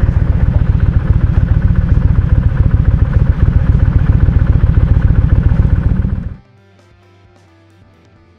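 Kawasaki Vulcan cruiser motorcycle engine running with a loud, rapid, even pulse from the exhaust. It cuts off suddenly about six seconds in, and quiet guitar music follows.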